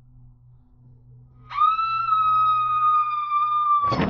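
Horror-film score: a faint low drone, then about a second and a half in a shrill, whistle-like tone slides up and holds steady for about two seconds, ending in a loud crashing hit near the end.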